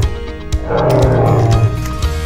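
Background music with an animal roar sound effect laid over it, lasting about a second in the second half.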